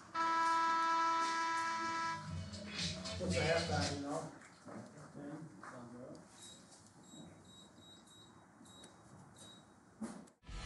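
Stadium scoreboard horn giving one steady blast of about two seconds as the game clock hits zero, marking the end of the second quarter and the half. Voices from the field follow it briefly.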